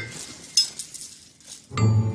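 A few light clinks and ticks. Then background music comes in with a sustained chord near the end.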